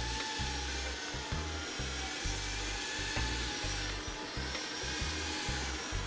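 Quiet background music with a low bass line that steps between notes, over a steady whirring hum.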